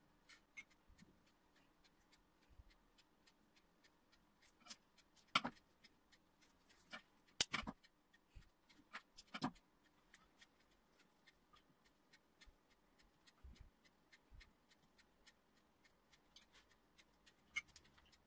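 Faint, scattered clicks and light taps of hands at work over a ceramic loaf pan, with a pastry brush dipped in a mug of water; a few sharper clicks come in the middle, over a faint steady room hum.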